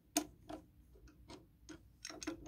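Hand-cranked manual paper and CD shredder being turned by its crank, its cutter mechanism giving a series of sharp clicks, about two or three a second, the first the loudest.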